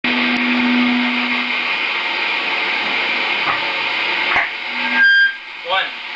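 Steady electric buzz and hiss from the band's switched-on amplifiers, with a low hum held for about the first second and a half. It stops abruptly about five seconds in, leaving a brief high tone and then a voice.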